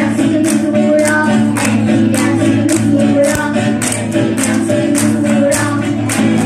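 Live group performance of acoustic guitars with voices singing together over a steady beat of about two strokes a second.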